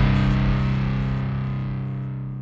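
The song's final distorted guitar chord ringing out with effects and fading steadily away as the track ends.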